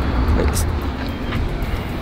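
Steady rumble of passing street traffic, mixed with wind buffeting the microphone.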